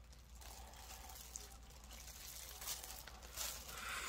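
Faint wet chewing of a mouthful of roast chicken, with a few soft mouth clicks in the second half.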